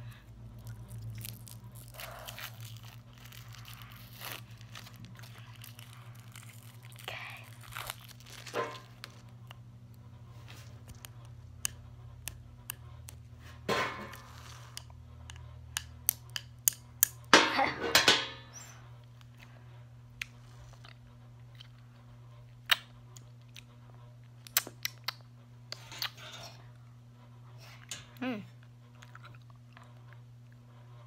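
Hard candy canes being bitten and crunched close to the microphone: sharp cracks scattered throughout, with the loudest burst of crunching about two-thirds of the way in.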